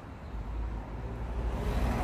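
Street traffic: cars running and moving along a town street, a steady low rumble that grows louder near the end.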